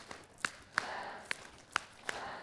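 Soft taps about two a second, with an audience faintly chanting "pad" in unison in time with them.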